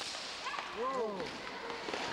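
A sharp crack of a floor hockey stick right at the start, followed about half a second later by a few short rising-and-falling squeals, in an echoing gymnasium.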